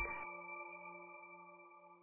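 The final chord of a short logo jingle: several held tones ringing out and slowly fading away.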